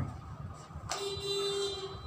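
A steady buzzing tone starts suddenly about a second in and lasts nearly a second, over a faint constant hum.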